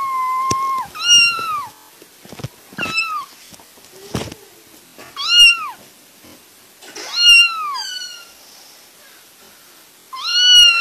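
A kitten meowing, a call every second or two: five high-pitched meows, each rising and then falling in pitch, the first trailing in from before and the last the longest. A short faint knock comes about four seconds in.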